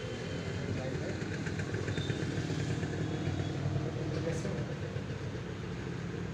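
A steady low hum with faint, indistinct voices in the background.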